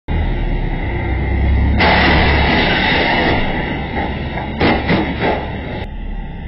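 Low-quality recording of road traffic: a steady low rumble of passing vehicles that grows louder about two seconds in, then a short cluster of sharp bangs about a second before the end.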